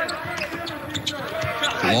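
A basketball bouncing on a hardwood court, a few sharp separate thuds, with voices calling faintly behind them in a large, echoing, near-empty gym.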